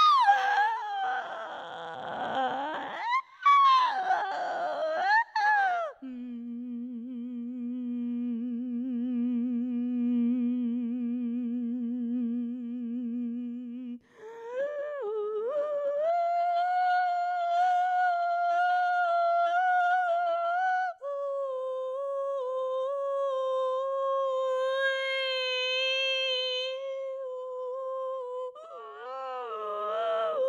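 Wordless singing: a woman's voice humming and holding long notes with a slight vibrato. At first the pitch slides up and down over a noisy wash, then it settles into three long held notes: a low one, a higher one, then one in between.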